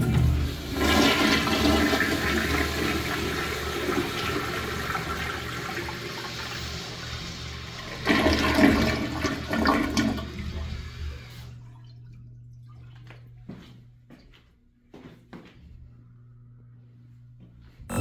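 A 1972 American Standard flushometer-valve toilet flushing: a sudden rush of water that surges again about eight seconds in, then cuts off about eleven seconds in. A few faint ticks follow.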